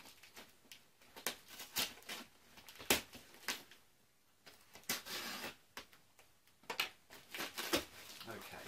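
Packing tape being picked at and peeled off a cardboard box, with irregular sharp clicks and crackles and a short rasping tear about five seconds in. A quick run of clicks comes near the end as a flap of the box comes open.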